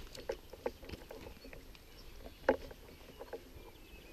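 Footsteps and rustling as a person walks through grass, in irregular short knocks, with one sharper knock a little past the middle.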